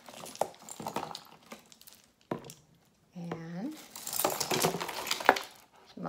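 Strands of beads clicking and rattling against each other as they are handled and pulled apart to untangle them, in quick irregular clicks with one sharper click near the end. A short murmured voice sound comes about three seconds in.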